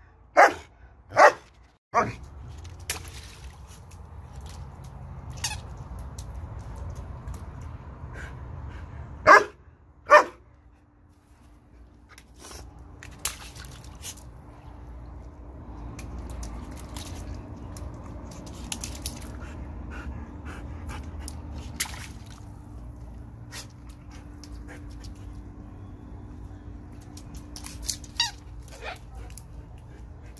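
German shepherd barking: three loud barks in the first two seconds and two more about nine and ten seconds in, then only scattered small clicks and taps over a low steady rumble and a faint steady hum.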